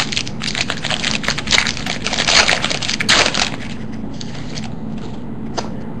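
Wrapper of a baseball card pack being torn open and crinkled by hand, with dense crackling for about the first three and a half seconds, then fainter rustling as the cards are handled.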